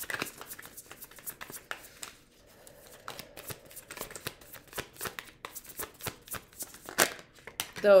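A deck of tarot cards being shuffled by hand: cards slapping and sliding against each other in quick, irregular clicks, thinning out briefly about two seconds in before picking up again.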